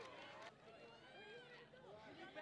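Faint voices of photographers calling out, over a low background hubbub.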